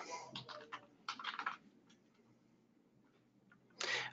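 Typing on a computer keyboard: a quick run of keystrokes in the first second and a half.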